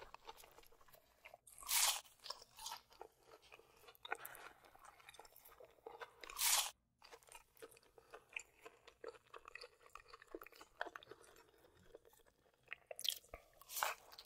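Close-up chewing and crunching of McDonald's chicken nuggets: many small wet clicks of chewing, with louder crunchy bites about two seconds in, about six and a half seconds in, and again near the end.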